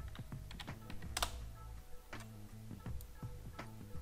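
Irregular clicking of a computer keyboard and mouse, more than a dozen sharp clicks with the loudest about a second in, over quiet background music.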